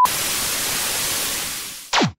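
Television static sound effect: an even hiss of white noise that fades slightly, then cuts to a quick downward-sweeping zap near the end, like an old CRT set switching off.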